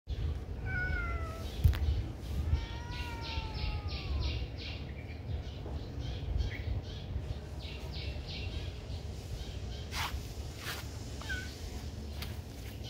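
A kitten meowing: a short call falling in pitch near the start, then a longer falling meow about three seconds in.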